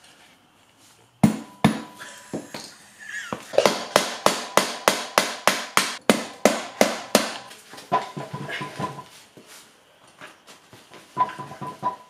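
Hammer blows on the rusted, stuck rear axle of a 1972 Honda CB350. A few separate metal strikes come first, then a quick run of about four ringing strikes a second for several seconds, then scattered lighter taps.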